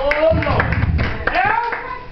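Hand clapping, with a man's raised voice calling out twice in loud, rising exclamations that carry no clear words.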